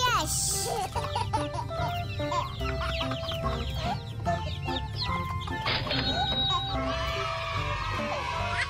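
Baby chicks peeping: a rapid, continuous run of short, high, falling cheeps, over background music.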